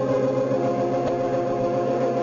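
Organ music playing sustained chords.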